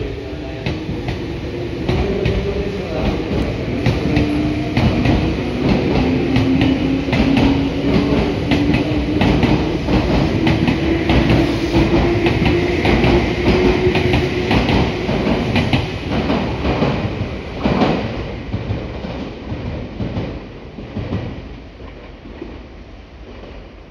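Meitetsu 5000 series electric train pulling away from the platform and accelerating past, its motor whine rising slowly in pitch over the wheels clattering on the rail joints. The sound fades as the last car goes by near the end.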